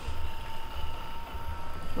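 Handheld percussion massage gun running against a dog's head, giving a low steady buzz.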